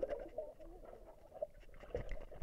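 Faint, muffled underwater gurgling and bubbling picked up by a submerged camera, with small irregular blips of moving water.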